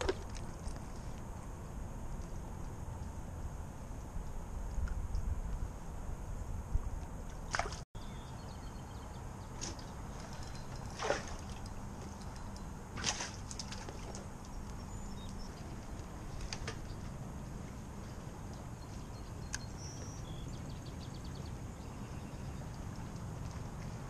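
Low rumble of wind and water sloshing around a fishing kayak, broken by a few short, sharp clicks and knocks of handling, the clearest two near the middle.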